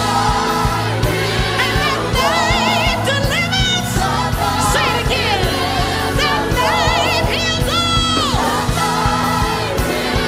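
Gospel worship song: a singing voice wavering in pitch on held notes and gliding between them, over band accompaniment with a steady beat.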